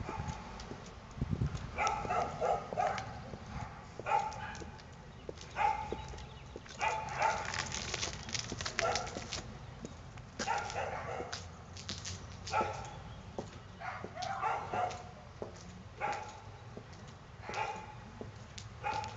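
A dog barking over and over, short sharp barks about once a second, in runs, with a denser flurry about seven to nine seconds in.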